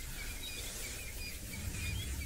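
Faint outdoor bush ambience: short, high bird chirps repeating over a low, steady rumble.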